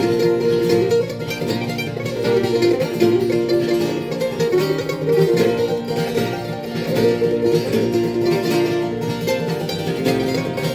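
A mandolin and an acoustic guitar playing a bluegrass tune together, in an instrumental passage without singing.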